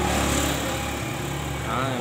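A vehicle engine running steadily, a low hum.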